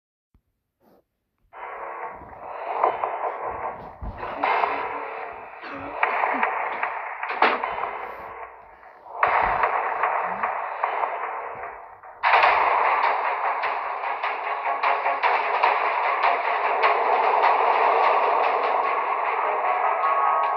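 Tinny, narrow-band audio from a string of short clips played back one after another, starting about a second and a half in and changing abruptly every few seconds, then a steadier, noisy stretch from about twelve seconds in.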